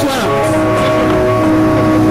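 A competition car audio system with a wall of subwoofers playing music loud: sustained held notes over a steady deep bass.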